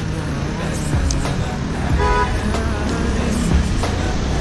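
Street traffic noise, a steady low rumble of passing vehicles, with one short car horn toot about two seconds in.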